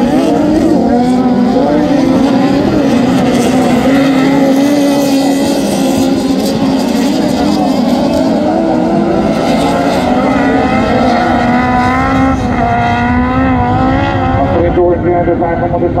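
Several Beetle-class autocross cars racing on a dirt track, their engines revving up and down, rising and falling in pitch as they accelerate and lift through the corners.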